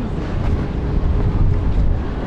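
Wind buffeting the microphone on an open pier by the sea, a loud steady low rumble, with a faint steady hum underneath.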